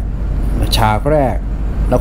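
A man talking in Thai, a short phrase in the middle, over a steady low hum.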